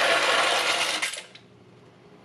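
Dry mostaccioli pasta poured from a cardboard box into a stainless steel pot: a dense, loud rattle of hard pasta tubes hitting the metal, which stops a little over a second in.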